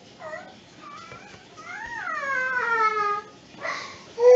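High-pitched whining cries in the background: a few short wavering ones, then a longer cry about two seconds in that rises briefly and then slides down in pitch.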